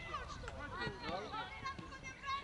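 Several voices calling and shouting at once on a football pitch, players and onlookers during play, overlapping and fairly quiet, with no clear words.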